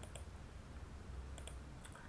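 A few faint computer mouse clicks, one near the start and three close together in the second half, over a low steady hum.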